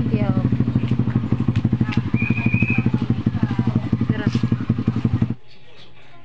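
Small motorcycle engine running with a fast, even putter, with voices talking over it; the sound cuts off abruptly a little past five seconds in.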